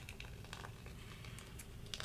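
Faint rustling and a few light clicks of hands handling paper and a small tool on a work table, over a low steady room hum.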